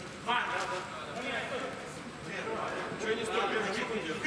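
Men's voices calling out and talking across the pitch, the words not clear.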